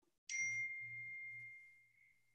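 A single ding a moment in: one clear high tone that starts sharply and rings on, fading away over about a second and a half.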